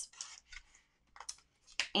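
Paper pages of a hardcover picture book being handled and turned, heard as a few short, soft rustles.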